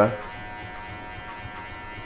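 Cordless electric hair clipper with a number two guard, blade closed, running steadily with an even buzz as it tapers the hair at the nape of the neck.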